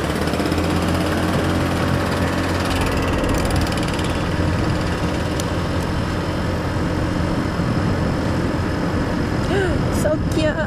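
Chinese 150cc GY6 scooter riding along a road: the engine running under way beneath a steady rush of wind and road noise.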